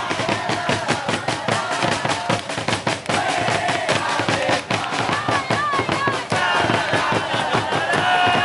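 A line of large bass drums beaten in a fast, steady beat, with a crowd of supporters singing and chanting loudly along.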